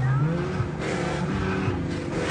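Car engine revving as the car accelerates, its pitch rising and falling over a steady rushing noise.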